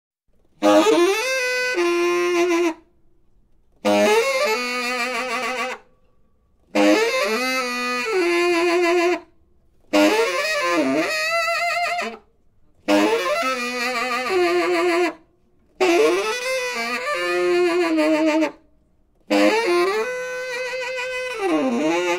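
Solo saxophone playing short free-jazz phrases, seven in all, each about two seconds long and separated by brief silences; the notes bend and slide between pitches, with no drums.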